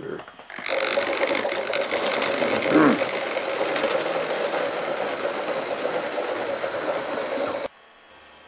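Electric model railway locomotive running along the track: a steady motor whirr with wheels rattling over the rails. It cuts off suddenly near the end.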